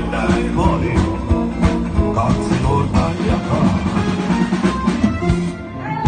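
Live band music: drum kit, bass guitar and keyboard accompany a male singer on a ballad, with a brief drop in level near the end followed by a held chord.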